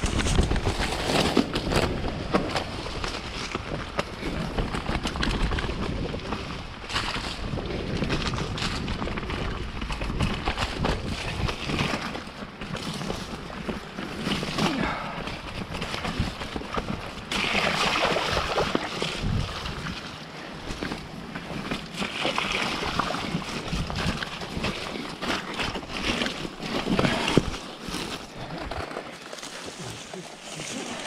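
Mountain bike being ridden along a muddy trail: continuous noise of tyres rolling over dirt and through wet mud, with frequent small rattles and knocks from the bike over rough ground.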